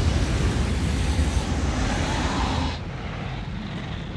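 Film sound effects of great forge furnaces and machinery running: a dense, steady low rumble with a rushing hiss over it. The hiss cuts off abruptly about three seconds in, leaving the rumble.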